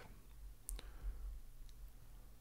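A few faint, sharp computer mouse clicks, two close together about two-thirds of a second in and another near the end, over a low steady hum.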